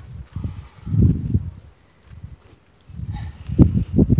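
Wind buffeting the microphone in irregular low rumbles: one gust about a second in, a lull, then stronger gusts near the end.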